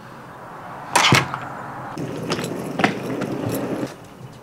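A hotel room door's metal lever handle and latch opening with a sharp clack about a second in, followed by softer scattered knocks and rustling.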